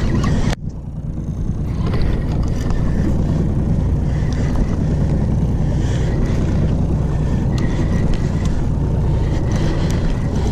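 Steady low rumble of a boat's 90 hp Evinrude E-TEC outboard motor running. The sound drops out abruptly about half a second in and swells back over the following second.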